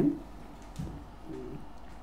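A pause in speech, with a faint, low hum-like murmur from a person's voice about a second in.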